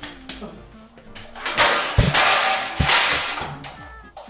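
Metallic clattering and knocks from a screwdriver working inside a metal electrical cabinet, with a loud hissing, crackling burst in the middle. Two sharp knocks fall within that burst. Faint background music runs underneath.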